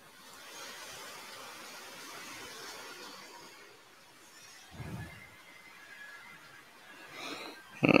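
Hissy, rustling noise coming over a video-call line, with a single dull thump about five seconds in.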